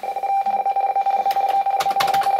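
RTTY (radioteletype) signal from an ICOM IC-718 shortwave receiver's speaker, tuned to 7646 kHz: a steady data tone with a fainter second tone, chattering rapidly as it shifts between them.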